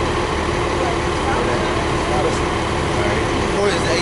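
Steady city street noise, mostly traffic rumble, with faint voices underneath.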